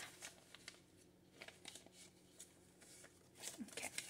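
Faint, scattered rustling and soft clicks of paper banknotes and a clear plastic binder pouch being handled.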